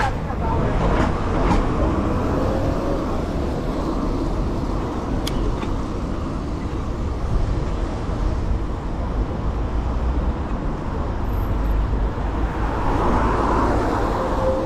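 City street traffic and tyre noise on a wet road, heard from a moving bicycle, with wind rumbling on the microphone of a handlebar-mounted action camera.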